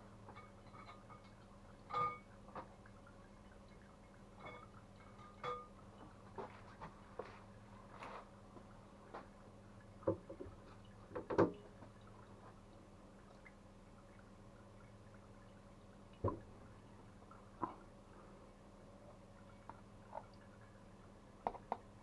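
Glass jar and plastic lid being lifted out of a crock of cucumbers in brine: scattered light clinks and knocks with water dripping. A steady low hum runs underneath.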